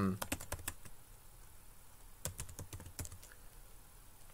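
Typing on a computer keyboard: two short runs of keystrokes, one at the start and another a little past two seconds in.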